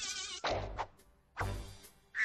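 Cartoon sound effects: a warbling buzz that breaks off about half a second in, then two sharp hits about a second apart, each fading away.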